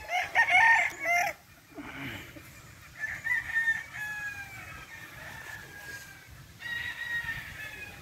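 Gamecocks crowing: a loud burst of crowing in the first second or so, a long drawn-out crow through the middle that slowly falls in pitch, and another crow near the end.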